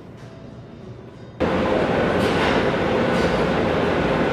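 Quiet room tone, then about a third of the way in a sudden switch to loud, steady car-assembly-plant floor noise: a dense machinery din with a steady mid-pitched hum running through it.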